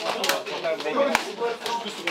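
Overlapping chatter of several men's voices in a crowded changing room, with two sharp hand slaps, one at the start and one about a second in.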